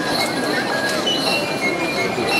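Outdoor crowd chatter at a festival dance, mixed with shrill, steady high tones that come and go.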